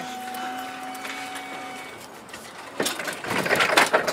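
Forklift motor whining steadily, stopping about two seconds in. Near the end comes about a second of loud rattling and clattering from the forklift and the table on its forks.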